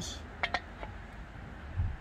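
Two light clinks about half a second in as a 1 lb propane bottle is handled, over a low rumble of wind on the microphone.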